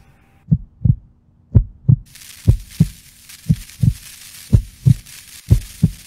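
Heartbeat sound effect: paired low thumps, lub-dub, repeating about once a second. A faint hiss comes in behind it about two seconds in.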